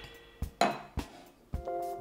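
A few sharp clinks of glassware, the loudest about half a second in, over background music that holds a steady chord near the end.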